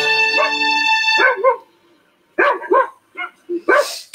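Guitar music ending about a second and a half in, followed by a dog giving a run of short barks, about five, from about two seconds in.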